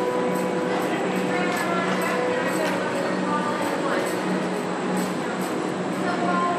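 Hoofbeats of a show-jumping horse cantering on course, an even beat a little over two a second, over a steady background hum and indistinct voices.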